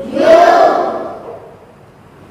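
A class of children repeating a word aloud together in chorus, once, for about a second.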